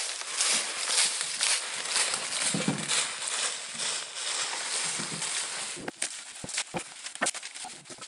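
Footsteps crunching through dry fallen leaves at a walking pace, with the bicycle-wheeled cart rustling over the leaves behind. About six seconds in the steps stop and only a few light clicks and cracks are left.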